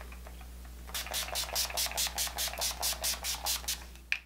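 Pump-mist makeup setting spray (Urban Decay All Nighter) spritzed onto the face in a quick series of short hisses, about six a second, starting about a second in.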